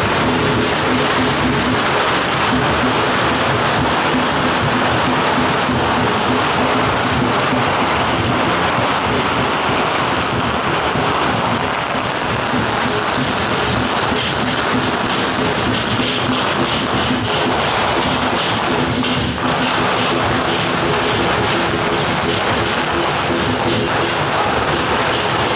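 Strings of firecrackers crackling densely without a break, over festival procession music.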